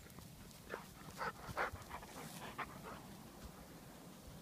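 Heavily pregnant Weimaraner panting: a quick, irregular run of about half a dozen short breaths in the first half of the clip, then quieter.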